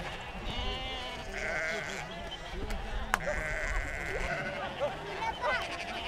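A pen full of Icelandic sheep bleating, several at once, with long wavering calls overlapping. Human voices and a laugh run underneath, and a sharp click sounds about three seconds in.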